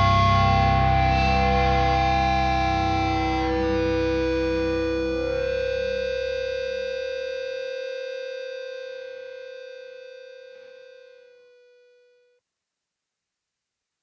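A distorted electric guitar chord held at the end of a song and left to ring, slowly dying away. The low notes fade out about halfway, and the rest dies to silence about twelve seconds in.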